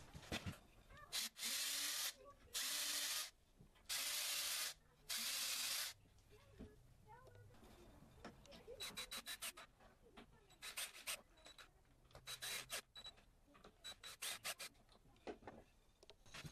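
Four loud bursts of hissy noise, each under a second long, then four short runs of rapid clicking as a cordless drill-driver drives small screws into a plywood board, one run per screw.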